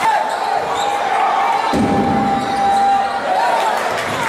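Basketball being dribbled on a hardwood court in a large, echoing gym, with voices from players and the crowd. A single long held tone runs for about three seconds, then wavers and breaks off.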